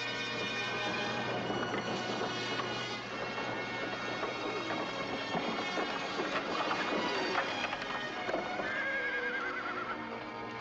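Horse-drawn covered wagons approaching: hooves clip-clopping and the wagons rattling, with a horse neighing near the end, over background music.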